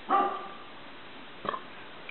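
A single short, pitched yelp that fades within half a second, then a brief click about a second and a half later.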